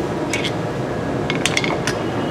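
Light metallic clicks and clinks of a screwdriver against the studs of a brake hub as it is levered round a quarter turn, over a steady background hum.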